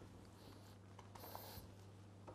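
Near silence: room tone with a low steady hum and a few faint soft taps and rubs from hands stretching sourdough on a floured worktop.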